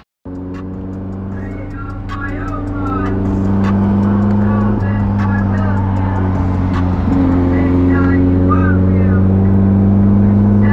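Nissan 240SX (S13) engine running, heard from inside the cabin with the revs held above idle; it grows louder over the first few seconds, then holds steady.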